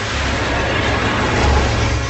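Film sound effect of a starship's engines flying by at attack speed: a loud rushing noise that swells to its peak near the end and then cuts off suddenly.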